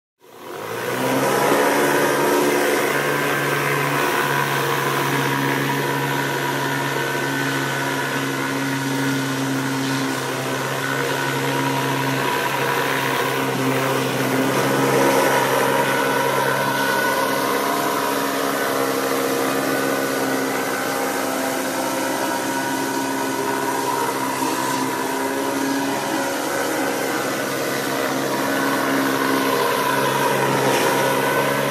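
A pressure washer's engine runs steadily with a constant hum and a hiss over it, starting abruptly at the beginning.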